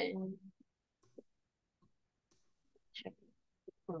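A few faint, scattered clicks of a computer mouse.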